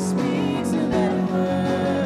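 Live worship band playing a song in a church hall: strummed acoustic guitar, electric guitars and keyboard, with a singer's voice.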